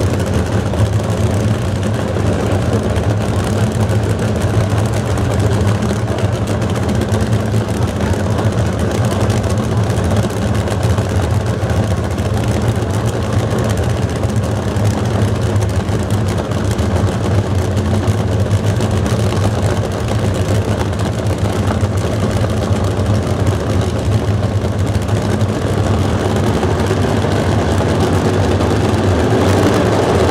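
Two supercharged nitro-burning nostalgia funny car engines idling together at the starting line, a loud, steady low rumble. It swells slightly near the end as the cars stage.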